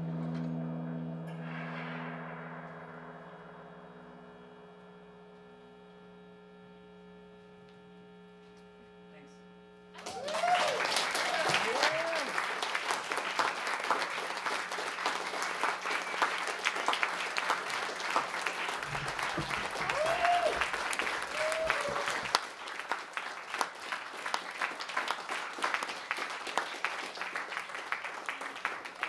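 The last sustained tones of a live drone piece fade away over about ten seconds, then an audience breaks into applause with a few cheers, thinning out near the end.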